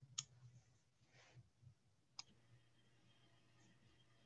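Two faint, sharp computer clicks about two seconds apart, the kind made when advancing a slide show, over near silence with a faint low hum.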